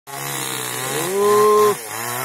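Two-stroke chainsaw engine idling, then revved up to a high, steady pitch about a second in and dropped back to idle near the end.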